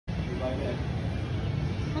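Steady low rumble of background noise with a faint voice briefly heard about half a second in.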